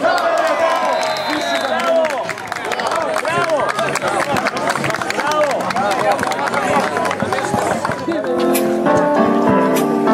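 Several voices of an outdoor crowd talking and calling out over one another, with scattered sharp taps. About eight seconds in, background music comes in and carries on.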